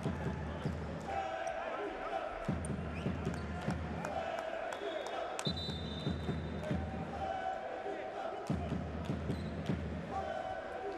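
Arena crowd chanting in a repeating cycle about every three seconds, each chant line answered by a burst of fast, heavy drum beats. A brief high whistle-like tone sounds about five and a half seconds in.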